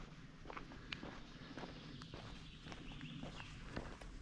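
Faint footsteps of a hiker walking on a gravel track.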